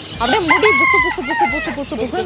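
A rooster crowing: one held call a little past half a second in, then a shorter falling note, over a woman talking.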